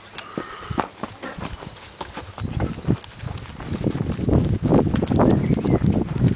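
Footsteps running on grass: irregular thuds that come faster and louder from about halfway, over a low rumble.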